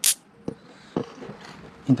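Two light clicks about half a second apart from a pair of small oval magnets being handled and separated.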